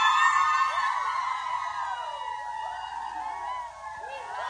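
A group of teenage girls screaming and cheering together, many high voices at once, loudest at the start and trailing off over a few seconds.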